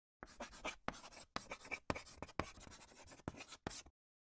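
A faint writing sound effect: about a dozen quick, scratchy strokes like a pen on paper, irregularly spaced, stopping just before the end.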